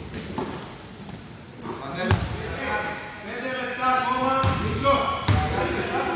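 A basketball bouncing on a hardwood gym floor, with two louder bounces about two and five seconds in, amid short high shoe squeaks and players' voices in an echoing sports hall.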